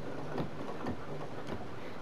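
Domestic sewing machine with a ruler foot stitching a straight line along an acrylic quilting ruler: a steady hum with a few faint, irregular ticks.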